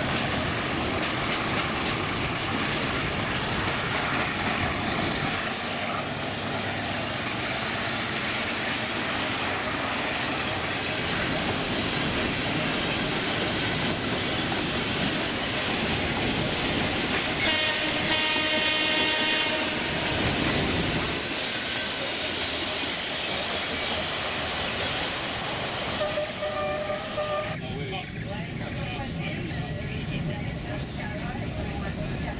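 Passenger train running steadily along the track, heard from inside an open-sided carriage. About two-thirds of the way through, a horn sounds once for about two and a half seconds over the running noise.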